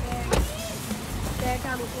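A single sharp thump about a third of a second in, over background voices and music.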